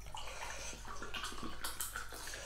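Water pouring out of a plastic water bottle in a steady stream.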